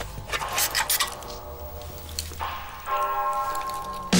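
TV advert soundtrack: a few short sharp clinks and knocks in the first two seconds, then a held musical chord that starts about two and a half seconds in.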